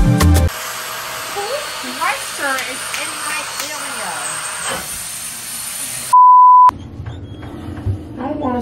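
Loud concert music cuts off half a second in and gives way to voices in a room. About six seconds in, a loud, steady beep of one pitch sounds for about half a second, a censor bleep over the audio.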